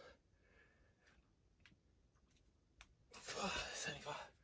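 A man's heavy, effortful exhale from push-up exertion, about three seconds in and lasting nearly a second, with the tail of a similar breath at the very start. Faint light ticks fall in the quiet between.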